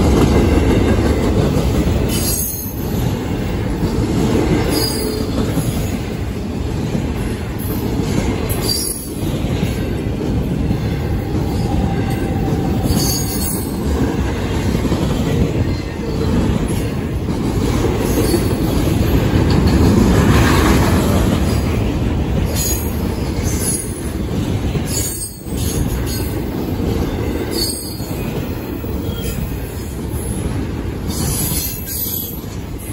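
CSX intermodal freight train's container and trailer cars rolling past with a steady loud rumble of steel wheels on rail. Brief high-pitched wheel squeals come every few seconds.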